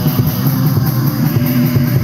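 Live rock band playing: electric guitars over a drum kit keeping a steady beat, loud and continuous.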